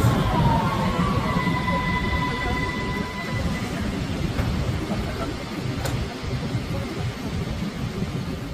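Vienna U-Bahn train's electric motors whining as it brakes to a stop: a steady high tone that cuts off about three seconds in. After that there is a low rumble of station noise with voices.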